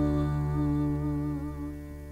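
A woman's singing voice holds the last note of a vocal warm-up exercise with vibrato, over a sustained chord on electronic keyboard and classical guitar. The voice ends near the end, and the chord fades away.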